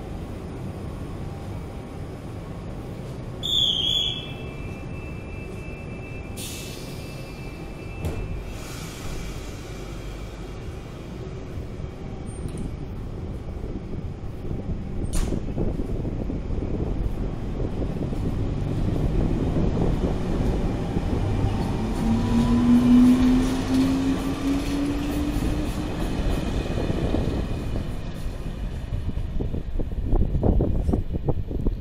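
HŽ 6111 electric multiple unit pulling past on the platform track: a rumble of wheels and motors that builds through, with a motor whine rising in pitch about two-thirds of the way in as it gathers speed. A brief high chirp about four seconds in.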